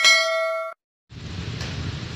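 Subscribe-button animation sound effect: a bright bell-like ding with several ringing tones, cut off abruptly under a second in. After a short silence, a steady outdoor background rumble comes in.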